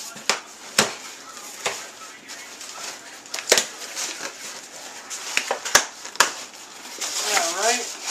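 Cardboard shipping box being opened by hand: rustling and scraping of cardboard, with a string of sharp knocks and clicks.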